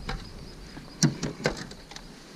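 A few short knocks and clicks in a fishing kayak as a caught bass is handled over the landing net, the loudest about a second in and another about halfway through the second second.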